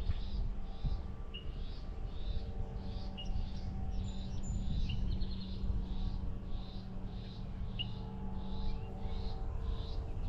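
Birds calling: a high note repeated about twice a second, with short rising chirps now and then, over a steady low rumble.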